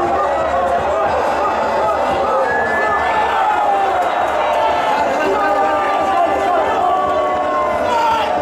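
Stadium crowd noise: many spectators shouting and calling at once, a steady din of overlapping voices.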